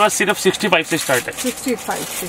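Speech only: a voice talking, with no other sound standing out.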